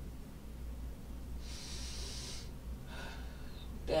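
A woman's single deliberate breath, about a second long and starting about a second and a half in, taken as part of a seated breathing exercise of in through the nose and out through the mouth.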